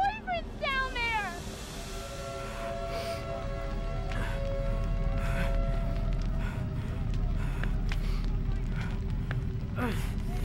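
Film soundtrack: a wavering, falling cry in the first second or so, then a sustained, dark music score of held tones over a low rumble.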